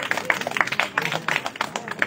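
Audience applause: many hands clapping in a quick, uneven patter as a speech ends.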